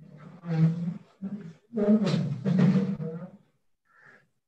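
A man's voice speaking loudly over a video-call connection in three short phrases, the words mostly unclear.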